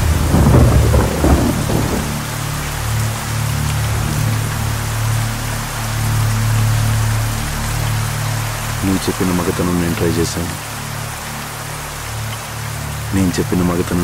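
Heavy rain falling steadily, with a rumble of thunder loudest in the first two seconds. A low steady drone runs beneath, and short pitched bursts come in about nine seconds in and again near the end.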